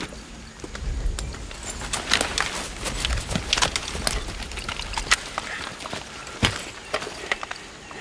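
Soldiers' kit being handled: canvas and webbing rustling, with scattered small clicks and knocks of buckles, clips and gear. One sharp click about six and a half seconds in stands out as the loudest.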